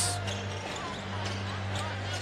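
Live court sound of a basketball game: a ball being dribbled on a hardwood floor and faint squeaks, over steady arena noise with a low hum.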